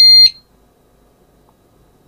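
Pyronix Enforcer alarm panel's exit-delay beep, a loud high-pitched tone, the last of a once-a-second series, cutting off about a third of a second in as the exit timer ends and the system sets.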